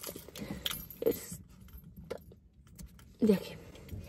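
Keys on a key ring jingling and clicking as they are handled, in a few light scattered clicks.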